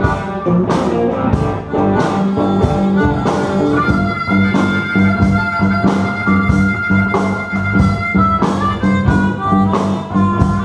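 Live blues band: a harmonica cupped to a microphone plays over electric guitar, bass guitar and drums with a steady beat. The harmonica holds one long note through the middle of the passage.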